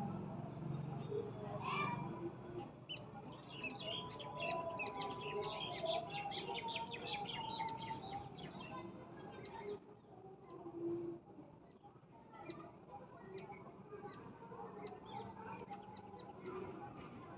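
Faint, rapid chirping of small birds in the background. Under it is the soft scrape of a spatula stirring onion-masala paste frying in a pan.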